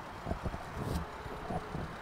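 Road vehicle noise: a steady background rush with irregular low knocks scattered through it.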